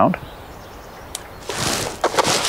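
Monofilament leader line being drawn off a plastic spool by hand, heard as a soft hissing rustle that starts about one and a half seconds in. Before it there is quiet outdoor background with a single faint tick.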